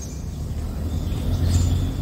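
Low, steady rumble of a motor vehicle running nearby, growing louder about one and a half seconds in.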